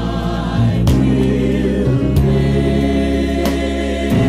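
Gospel choir of mixed voices singing a slow hymn with instrumental accompaniment: a sustained low bass line under the voices and a sharp percussive hit about every 1.3 seconds.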